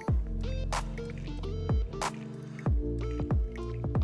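Background music with a steady beat: deep bass notes that drop in pitch, and a sharp hit about every second and a quarter over held tones.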